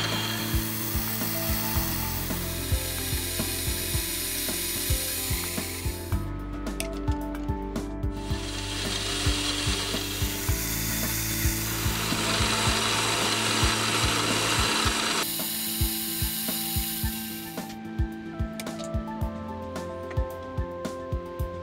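Drill press drilling holes in a brass plate: a hissing cutting noise that runs for several seconds, stops, then starts again for the next hole. Under it, background music with sustained low notes and a steady clicking beat.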